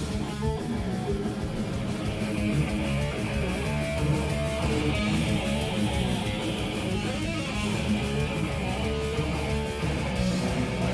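Live rock band playing a song: distorted electric guitar with bass and drums, steady and unbroken.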